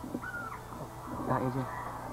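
Quiet talking with a bird call in the background, over a steady low hum.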